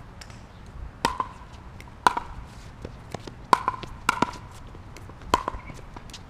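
Paddle strikes on a plastic pickleball during a rally: five sharp hits, each with a short high ring, spaced about a second apart.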